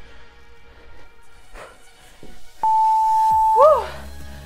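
Interval-timer beep: one steady electronic tone about a second long, coming past the middle, marking the end of a work interval, followed by a short rising-and-falling tone. Background music runs underneath.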